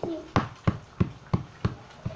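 A regular series of sharp knocks on a stone kitchen countertop, about three a second, close to the microphone.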